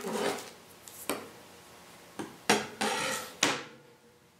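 Handling clatter: a plastic ruler and a length of craft wire knocked, slid and set down on a wooden tabletop. There are a few short knocks and scrapes, and most of them come in a cluster in the second half.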